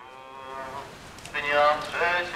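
Voices singing a hymn in a church procession: held notes, faint at first, then much louder from about a second and a half in.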